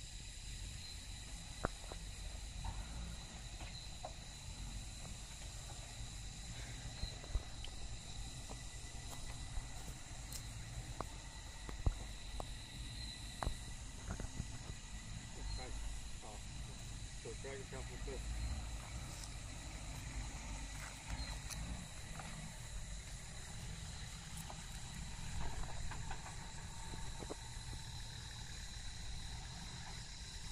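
Distant four-wheel-drive engine running low and steady as the vehicle crawls over creek-bed rocks, with occasional knocks and clicks. A steady high insect drone runs over it, and faint voices come in briefly a few times.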